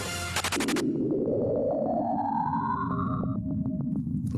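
Saturn radio emissions recorded by the Cassini probe and played back as sound: a quick burst of clicks, then an eerie whistling tone that rises steadily in pitch for about three seconds and stops, followed by a few clicks, over a low rumbling hiss.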